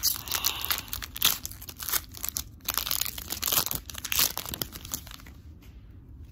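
Foil wrapper of a Pokémon trading card booster pack crinkling and tearing as it is ripped open by hand, a rapid run of crackles that stops about five seconds in.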